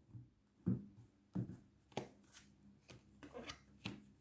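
Tarot cards being handled: a faint string of short, light taps and flicks, about one every half second to second.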